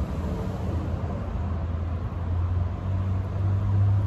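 A steady low hum of a motor running, over a haze of outdoor background noise.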